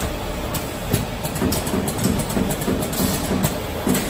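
Automatic mini pick-fill-seal packing machine running: a steady mechanical hum with sharp clicks and knocks from its moving parts, and a run of even low pulses, about three a second, in the middle.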